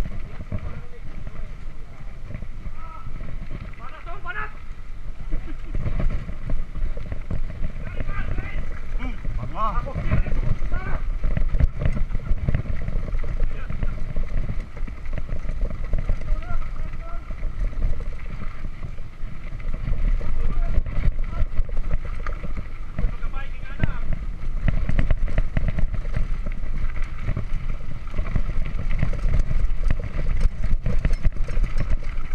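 Mountain bike ridden over a rough dirt and stone trail, heard through a chest-mounted GoPro Hero 3: a steady low rumble of wind and tyres on the ground, with frequent rattling knocks from the bike over bumps.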